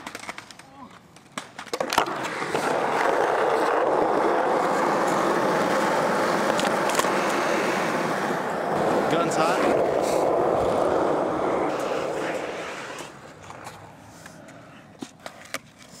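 Skateboard wheels rolling on a hard court surface close to the microphone: a few sharp clacks in the first two seconds, then a steady, loud rolling for about ten seconds that fades out a few seconds before the end.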